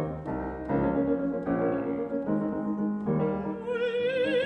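Grand piano playing a passage of sustained chords that change every half second to a second. About three and a half seconds in, a mezzo-soprano's voice comes in with a wide vibrato.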